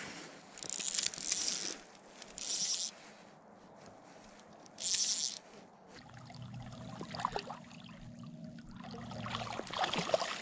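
Fly reel's click drag buzzing in three short bursts over the first half as a hooked fish is played, then softer water sounds with a low steady hum in the second half.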